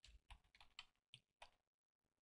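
Faint keystrokes on a computer keyboard: a handful of quiet, separate key clicks as a word is typed.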